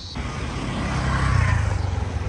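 A road vehicle passing close by, its noise building to a peak about a second and a half in.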